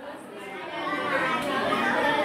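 Speech only: girls' voices talking in a classroom, getting louder over the first second.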